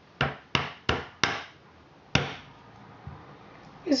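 Small metal hammer tapping a plastic extra peg into a red plastic round knitting loom. Four quick taps at about three a second, then a fifth about a second later.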